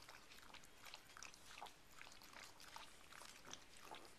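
Faint sounds of a Yorkshire terrier eating from a bowl: soft, irregular chewing and small clicks.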